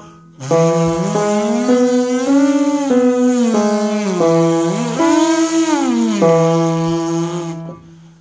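A brass player's lip buzz sliding through an arpeggio exercise over a steady held keyboard note: it climbs a triad plus the sixth, comes back down and goes up again, on the highest round of the series, up to high E. The buzz stops shortly before the end while the keyboard note keeps sounding.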